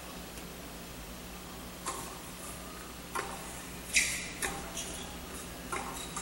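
Tennis ball being bounced and struck with rackets as a point is played: about five sharp knocks, the loudest about four seconds in, over a low steady hiss.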